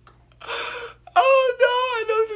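A man's high-pitched laughter: a breathy gasp about half a second in, then a wavering, wail-like squeal of laughter through the second half.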